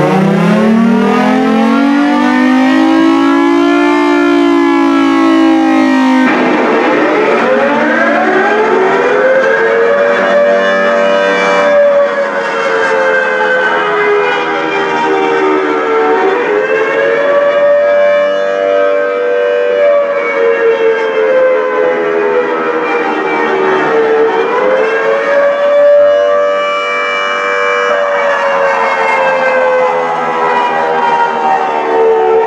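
Recorded outdoor warning siren wail played loudly from a laptop through an amplifier and horn speakers. It rises over the first few seconds, changes abruptly about six seconds in, climbs again, then holds a steady wail that sags in pitch about every eight seconds.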